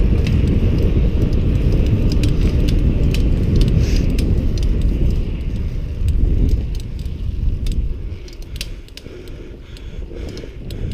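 Wind buffeting the microphone of a camera on a bicycle riding a paved trail, a heavy low rumble, with scattered light clicks and rattles from the bike and mount. The rumble eases after about seven seconds.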